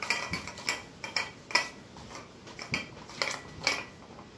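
A string of irregular light metallic clinks and knocks, some with a brief ring, from a plate-loaded dumbbell's iron plates and steel handle shifting as fabric is rolled around the handle to thicken the grip.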